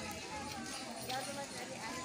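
People talking in the background, with a few light taps mixed in.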